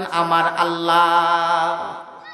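A man's voice holding one long chanted note into a microphone, the drawn-out sung ending of a sermon line, fading away near the end.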